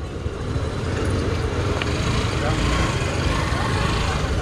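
Scooter engine running close by, a low steady rumble.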